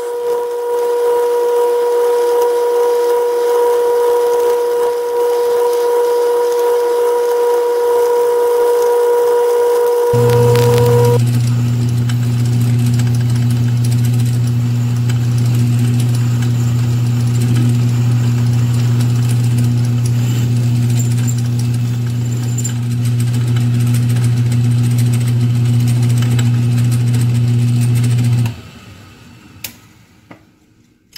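Metal lathe running while a large twist drill bores into the spinning workpiece: a steady machine whine that changes to a deeper hum about ten seconds in. It stops abruptly near the end as the lathe is shut off.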